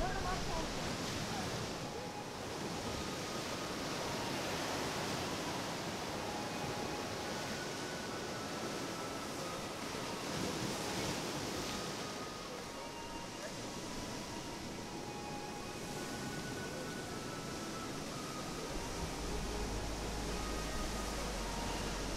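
Steady wash of ocean surf and wind, with faint high notes now and then.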